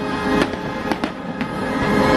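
Fireworks bursting overhead, about four sharp cracks within a second and a half, over the show's music soundtrack.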